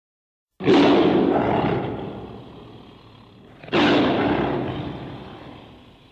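A tiger roaring twice, each roar starting suddenly and fading away over a couple of seconds, the second about three seconds after the first.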